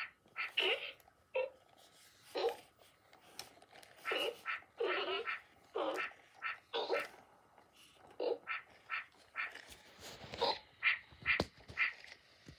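Sony aibo robot dog making a string of short electronic yips and whines while its head is stroked, with a couple of sharp clicks near the end.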